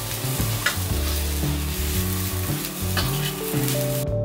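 A metal spatula stirring and scraping vermicelli, grated coconut and dates round an aluminium pan as they fry in ghee, with a steady sizzle and a few sharper scrapes of the spatula on the pan.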